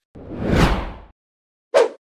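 A whoosh transition sound effect that swells and fades over about a second. A short blip follows near the end.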